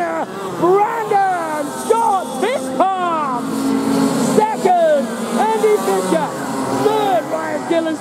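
A man's voice talking continuously over a public-address loudspeaker, with 125cc two-stroke kart engines running on the track underneath. The steady engine hum is loudest between about two and five seconds in.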